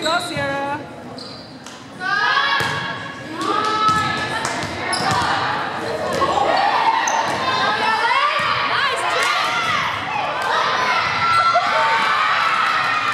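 Volleyball rally in a large gym: sharp hits of the ball mixed with players' high-pitched shouts and calls, echoing in the hall. It is quieter for the first two seconds or so, then busy and loud.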